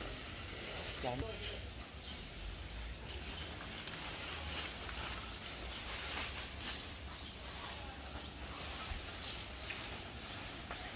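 Faint outdoor background noise with scattered light clicks and rustles; no saw is running.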